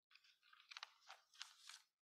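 Faint rustling and crackling of paper being handled, with a few sharper crackles in the second half.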